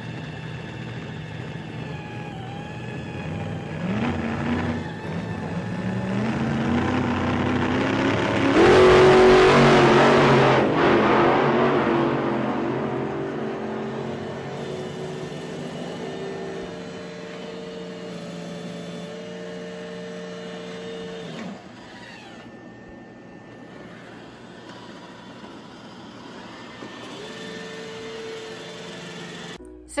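Roomba i4 robot vacuum running on thick shag carpet. Its motor whine rises about four seconds in to a loud rushing peak around nine seconds, then eases off and drops quieter a little past twenty seconds.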